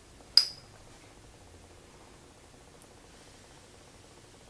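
A single sharp glassy clink about half a second in, ringing briefly, from a small glass perfume rollerball vial being handled; a faint tick follows later.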